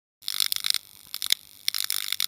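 Neon-sign flicker sound effect: electrical crackling and sputtering in irregular bursts of short, hissy clicks as the sign flickers on.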